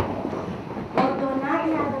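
Children scrambling under classroom desks, with a steady noise of bodies, chairs and tables shifting and a sharp knock about a second in. A woman's voice speaks over it.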